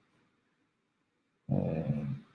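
Near silence for about a second and a half, then a short, low voiced sound from a man, a drawn-out filler sound rather than words.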